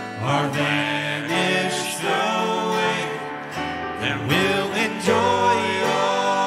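Two men and a woman singing a gospel song into microphones, accompanied by strummed acoustic guitar.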